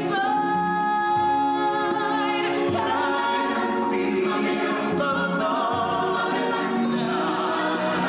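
An ensemble of voices singing long held notes with vibrato, part of a stage musical's love ballad.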